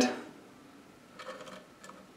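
Faint, light clicks and handling of a small metal spacer and pivot bolt being fitted by hand into a mountain-bike suspension linkage pivot, mostly about a second in.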